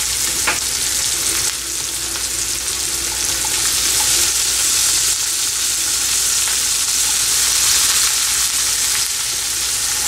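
Chopped red onion sizzling in hot oil in a nonstick wok: a steady frying hiss, with a single light click about half a second in.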